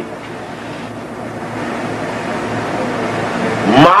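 A steady hiss of background noise with a faint low hum, slowly growing louder; a man's voice starts near the end.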